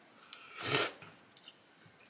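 A person's single short, sharp breath through the nose, about a second in, under half a second long, followed by a couple of faint clicks.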